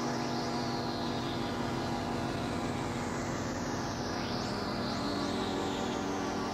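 Ambient electronic music on a Korg synthesizer: held, droning chords under a high tone that slides slowly downward, with a few quick upward sweeps in the second half.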